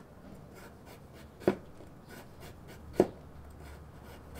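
Chef's knife slicing through a carrot and striking a wooden cutting board: two sharp knocks about a second and a half apart.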